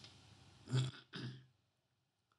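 A man clearing his throat: two short rasps about a second in.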